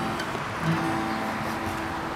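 Acoustic guitar with a couple of notes ringing and held, over a steady background hiss.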